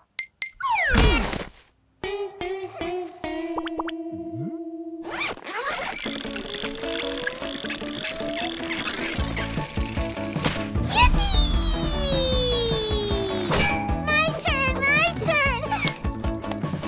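Cartoon sound effects and music: a falling whoosh with a low thud about a second in, then a wobbling boing-like tone. From about five seconds in, background music plays with long sliding pitch glides, one rising and later one falling, like a slide whistle.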